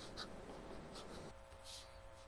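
Faint scratching of an Aurora Optima's broad fountain pen nib writing cursive on notebook paper, in a few short strokes.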